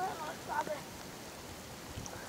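Soft, steady watery hiss of the river at the bank as a fish is released from a landing net, with a few brief vocal sounds in the first second.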